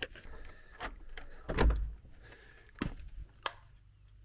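A key working a front-door lock and the door being opened: a series of separate clicks and knocks, the loudest with a low thump a little before halfway through.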